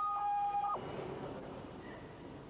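Electronic alarm sounding: two steady, unwavering tones held together that cut off suddenly less than a second in, leaving only a faint background hiss.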